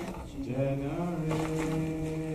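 A man singing a slow worship song, holding a long steady note in the second half.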